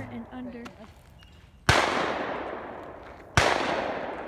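Two shotgun shots about a second and a half apart, each loud and followed by a long echo fading away.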